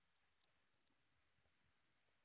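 Near silence, with a few faint, short, high-pitched ticks in the first second from a marker writing on a whiteboard.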